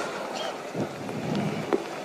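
Low, even background noise of a public meeting's sound system and surroundings between speakers, with a few faint knocks and clicks.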